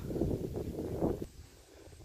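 Low, noisy rumble of wind and handling on a phone microphone as the camera moves, dying down about a second in.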